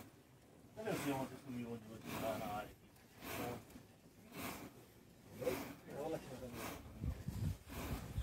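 Faint voices speaking in short phrases, with quiet gaps between them.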